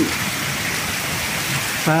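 Very heavy rain pouring down steadily, a dense even hiss.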